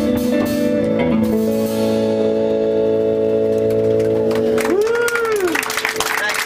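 A live band with electric guitar finishing a song on a long held, ringing final chord. Near the end a single note slides up and back down, and applause begins as the chord dies away.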